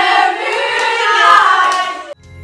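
A group of girls singing together loudly, with hand clapping.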